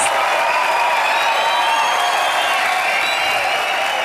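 Theatre audience applauding and cheering at the close of a stand-up comedy set, a steady ovation with music playing over it.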